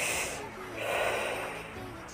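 Two breaths close to the microphone: a short, hissy one at the start, then a longer, lower one about a second in, over faint background music.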